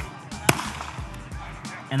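One loud, sharp snap about half a second in, with a few fainter sharp cracks around it.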